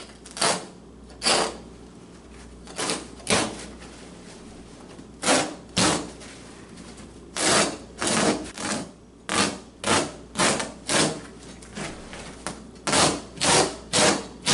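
Hooked carpet knife slicing through carpet in a series of short pulled cutting strokes. They come a second or two apart at first, then about two a second in the second half.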